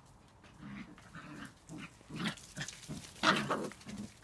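Border collie puppies, under six weeks old, vocalising in a string of short calls as they play, the loudest a little after three seconds in.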